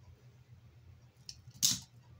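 A Bakugan toy ball springs open on a magnetic core card. There is a faint click, then a short, louder plastic snap near the end as its magnet strikes the core.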